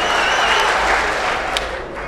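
Live theatre audience applauding, the applause dying down near the end.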